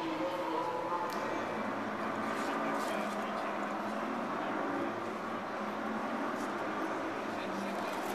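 Crowd chatter: many overlapping, indistinct voices carrying on steadily in a large hall.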